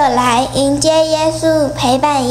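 A young girl's voice into a microphone, drawing her words out in a sing-song way on long held pitches, over a low steady hum.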